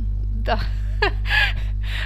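A woman's short, breathy laugh with a gasp, over a steady low electrical hum.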